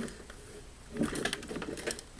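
Handling noise from a plastic digital alarm clock being lifted up close to the camera: a run of light, irregular clicks and rustles starting about a second in.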